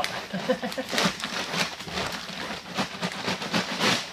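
Packing paper and cardboard rustling and crinkling in irregular bursts as a paper-wrapped roll of veneer is pulled up out of a cardboard shipping box.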